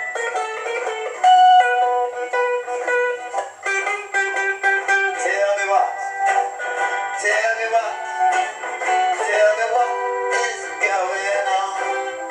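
Acoustic guitar strummed with a man singing along, a song sounding thin with no bass.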